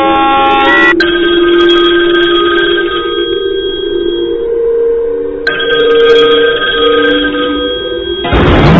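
Several held, ringing electronic tones, like a phone ringtone. A sharp click comes about a second in and another about five and a half seconds in, each where the tones change.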